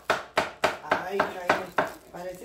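Large kitchen knife chopping onion on a wooden cutting board, about seven even strokes at roughly three a second.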